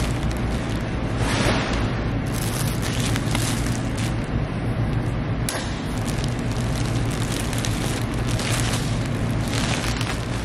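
Plastic crinkling and rustling in irregular bursts as a sweatshirt in a clear plastic bag is slid into a plastic poly mailer and smoothed flat, over a steady low hum.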